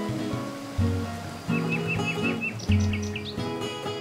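Background acoustic guitar music, plucked notes, with birds chirping over it: a quick run of about six short chirps near the middle, then a few higher chirps.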